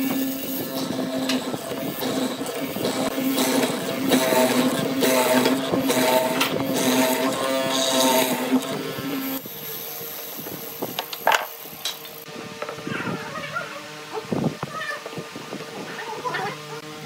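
A mortising machine runs with a steady hum while its chisel bit cuts into the wood for about nine seconds, then stops. The rest is quieter clicks and knocks, with one sharp click a little past the middle, as the work is shifted in the metal vise.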